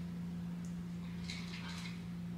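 A steady low hum, with a woman's strained breath, a short airy exhale, about one and a half seconds in while she holds an arm-balance yoga pose.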